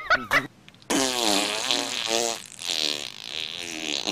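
A long, buzzy, fart-like noise with a wavering pitch, starting about a second in and lasting roughly two seconds, after a couple of short vocal sounds.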